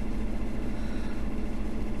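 Steady low hum of background noise, unchanged throughout, with no distinct events.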